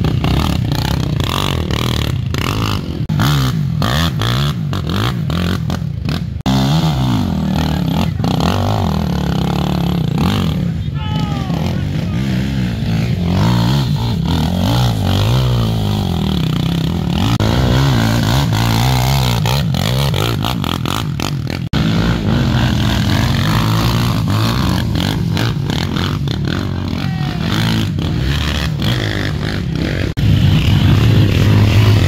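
Quad bike (ATV) engines revving up and down as the riders climb and slide through loose mud, with spectators' voices among them.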